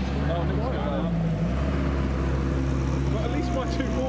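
Seven-style kit car's engine held at steady revs while one rear wheel spins in place on grass, a one-wheel peel. Voices chatter and laugh over it.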